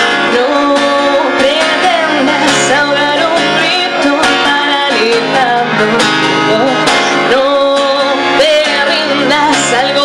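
A woman singing and strumming a steel-string acoustic guitar in a live performance, voice and guitar continuous throughout.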